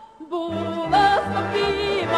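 Ukrainian folk song with a female voice and instrumental accompaniment: after a short pause the music comes back in, a melody over a bass line pulsing about two to three times a second.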